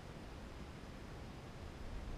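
Faint, steady hiss with a fluttering low rumble: wind buffeting the microphone of a GoPro camera riding a high-altitude weather balloon payload.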